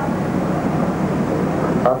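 Steady low background rumble with no breaks, then a man's voice starts to speak right at the end.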